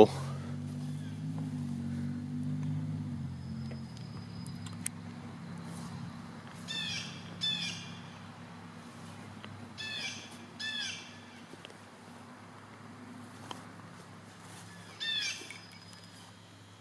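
A songbird giving short, falling chirps: two pairs, then one more near the end. A steady low hum runs underneath, louder in the first few seconds.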